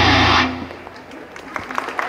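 A rock-styled idol pop song with distorted electric guitar ends on a held final chord that cuts off sharply about half a second in. After a short lull, scattered audience clapping begins near the end.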